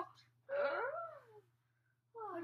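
A child's voice giving one drawn-out wail that rises and then falls in pitch, about a second long.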